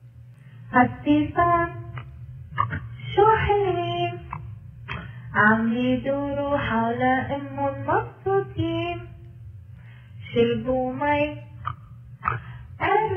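A recorded Syrian song about chickens: a high voice singing in short phrases with music, broken by brief pauses.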